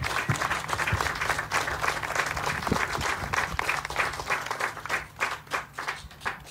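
Audience applauding, a crowd of hands clapping. The clapping thins out and dies away near the end.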